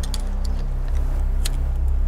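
A cigarette lighter being struck: a few short clicks, the sharpest about one and a half seconds in, over a steady low drone.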